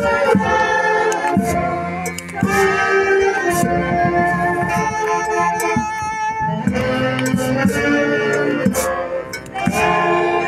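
Live band music with plucked strings, steady and loud, with people clapping along.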